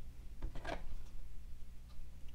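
Small handling clicks of a metal candle-wick tab and pliers, with a short cluster of sharp clicks about half a second in and a faint tick near the end, over a low steady hum.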